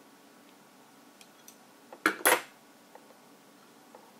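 Steel slip-joint pliers clacking: two sharp metallic clacks about a quarter second apart, about two seconds in, after a few faint ticks.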